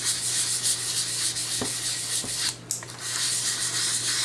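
220-grit sandpaper rubbing back and forth over an oil-wet wooden Mossberg 500 shotgun stock. The sandpaper is wet-sanding the Tru-Oil finish into a slurry that is worked into the grain to fill it. The strokes pause briefly about two and a half seconds in.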